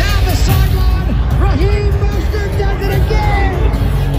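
Music with a heavy, steady bass, with voices mixed in over it.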